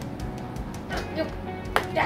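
Fingernails picking and scraping at the sticker seal on a cardboard box, with a few sharp clicks, the loudest near the end, over soft background music.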